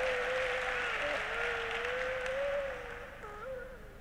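Audience applauding and cheering, with one voice holding a long cheer above it; it dies away near the end.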